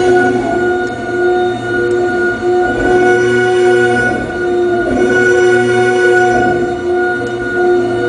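Audio output of a crystal radio picking up electrical interference from a computer screen: a loud drone of several steady tones held together, its mix shifting and its level dipping briefly a few times as windows are moved on the screen.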